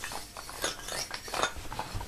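Wooden sticks tapping lightly on a child's wooden toy xylophone: a few soft, short clicks and knocks.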